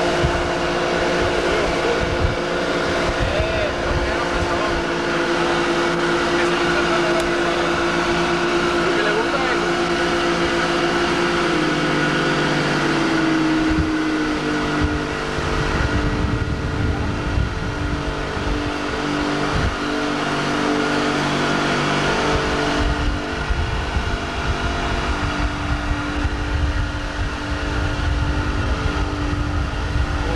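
Motorboat engine running at speed over wind and water rush. Its note drops about twelve seconds in, and the sound shifts again around sixteen seconds in.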